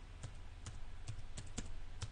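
Faint, irregular clicking of keys being typed on a computer keyboard, a few light taps spread unevenly, over a low steady hum.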